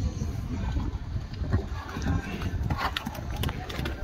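Hoofbeats of a horse cantering on a sand arena, with voices in the background.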